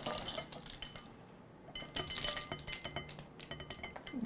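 Filled size 00 capsules dropping out of a plastic capsule-filler plate and clattering into a ceramic dish: a scatter of light clicks and clinks that thins out about a second in and picks up again before the end.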